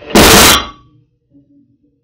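A stack of iron weight plates sliding off a glued wooden test joint and crashing onto a wooden workbench in one loud clatter lasting about half a second, followed by a few faint knocks as a plate rolls and settles. The joint itself holds; the weight slips off rather than breaking it.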